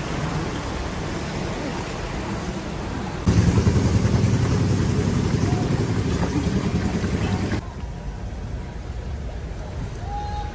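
A vehicle's engine running as it drives through floodwater, with water rushing and sloshing along its side. The sound jumps louder about three seconds in and drops to a quieter, duller rumble near the end.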